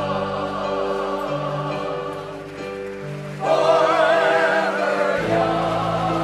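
Chorus of elderly amateur singers singing together. The voices swell louder and higher about three and a half seconds in.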